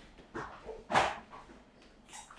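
A dog barking off camera: a few short barks, the loudest about a second in.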